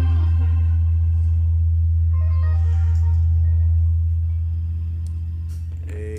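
Church praise band music winding down: a long held low bass note under organ chords and a short melodic line, the whole sound fading over the last two seconds.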